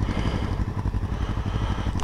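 Motorcycle engine running steadily at low revs, a regular throb of firing pulses.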